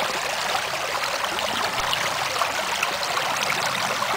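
River water rushing steadily through a homemade gold sluice box, flowing over its riffles.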